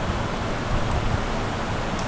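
Steady hiss of room background noise with a low rumble underneath, even throughout.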